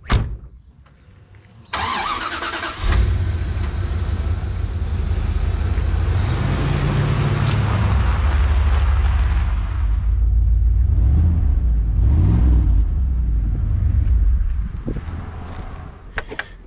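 Bentley Turbo R's turbocharged 6.75-litre V8 cranking briefly and catching, then running with a low, steady note. The revs rise and fall twice. The level drops off near the end.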